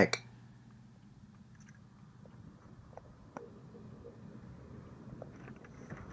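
Quiet car-cabin room tone with a steady low hum and a few faint clicks and rustles of handling as someone moves about inside the car.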